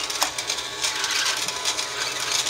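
Battery-powered toy Dyson ball vacuum cleaner running as it is pushed over carpet: a steady small-motor whine with a light rattle.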